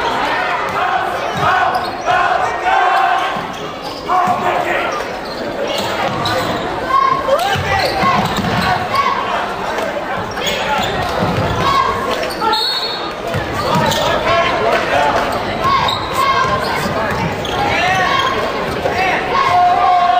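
Live basketball game in a large gym: the ball bouncing on the hardwood floor amid players and spectators calling out, all echoing in the hall.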